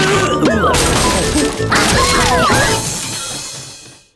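Cartoon soundtrack music with falling whistle-like pitch glides and two crashing impacts about a second apart as a toy cardboard rocket topples over. It all fades out near the end.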